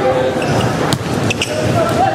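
Basketball practice in a gym: several people talking and laughing over one another, with a basketball bouncing and a few sharp knocks on the hardwood court.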